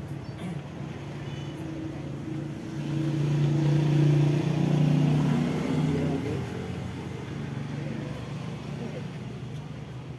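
A motor vehicle passes by, its engine getting louder to a peak about four to five seconds in and then fading away.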